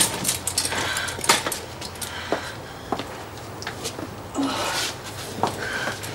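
Scuffling, footsteps and several sharp knocks and clatters as two people lift a fallen woman back into a wheelchair.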